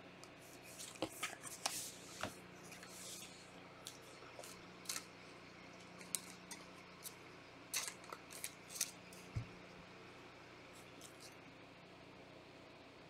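Trading cards being handled by gloved hands: a card in a thin plastic sleeve slid into and out of rigid plastic toploaders. The sound is faint scattered clicks and short scraping swishes, with one soft knock about nine seconds in.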